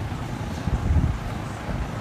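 Steady low rumble of a large gym drum fan, with a few low thumps about a second in as a person kicks up into a handstand and their feet land against the wall.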